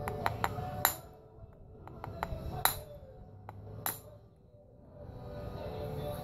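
Sharp ringing taps of a knapping punch being struck against a stone piece to knock off flakes: a few light clicks, with louder pinging strikes about a second in, near the middle and about four seconds in.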